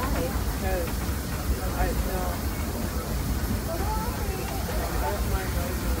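Steady low rumble of an open-sided passenger train car rolling along the track, with faint voices of people talking over it.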